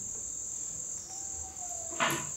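Crickets chirping in a steady, high-pitched chorus.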